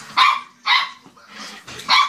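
Small white dog barking three short, sharp barks during play, the last near the end.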